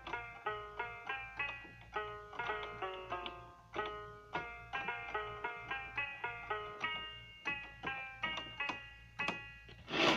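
Electronic keyboard played one note at a time, a simple melody of short notes that start sharply and fade, about three a second.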